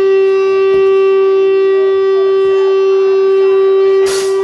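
Amplified electric guitar feedback: one loud note held at a steady, unchanging pitch throughout.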